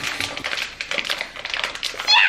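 A plastic pouch of pancake mix crinkling and rustling in a quick run of crackles as it is worked and pulled open by hand.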